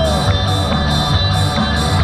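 A rock band playing live through stage speakers: guitar over a steady beat.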